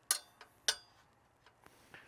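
A few sharp metal clicks from a 13 mm socket wrench loosening the nuts on an Alaska chainsaw mill's bar clamp. Two loud clicks come about half a second apart near the start, followed by fainter ones.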